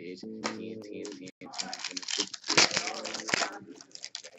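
Foil trading-card pack wrapper crinkling and tearing as it is ripped open, a dense crackle lasting about two seconds starting around a second and a half in, over faint background music.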